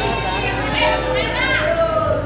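Several voices talking over one another in excited, high-pitched tones, with a low steady hum underneath.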